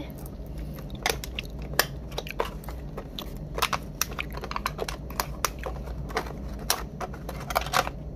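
Aluminium foil takeaway tray being opened: the crimped foil rim crackles and clicks in many small, irregular snaps as it is bent up and the card lid is pried off.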